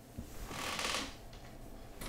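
A small Logitech Unifying USB receiver being handled and pushed into a computer's USB port: a brief, faint scraping rustle with a couple of small clicks.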